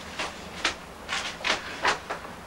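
A quick run of short rustling scrapes, about five in two seconds, from someone handling a book and other belongings.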